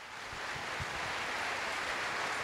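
Audience applauding, the applause swelling up over the first half second and then holding steady.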